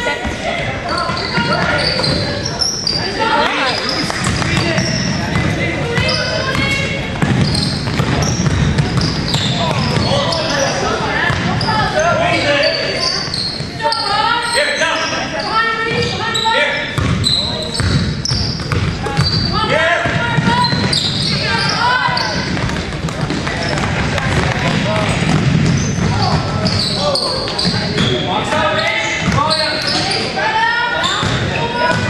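Voices of players, coaches and spectators calling out in a reverberant gymnasium, with a basketball bouncing on the hardwood floor.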